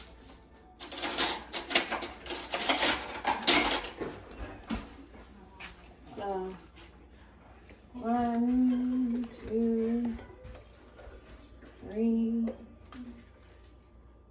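Metal cutlery rattling and clattering for about three seconds as a utensil drawer is rummaged for a spoon. Later come a few soft clinks of a spoon against a jar and a mixing bowl.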